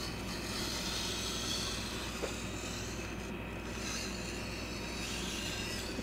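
Sword blade being worked by hand across a wet 1000-grit Shapton Kuromaku whetstone: steel rubbing on stone, steady and even.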